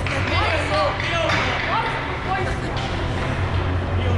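Scattered shouts and chatter of young hockey players, echoing in an ice rink, over a steady low hum of the arena's machinery.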